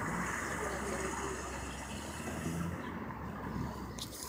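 Car's low, steady engine and road hum heard from inside the cabin.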